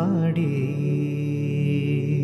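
A man singing a Malayalam film song: a short wavering turn on one syllable, then a long, steady, low final note held over a faint steady hum.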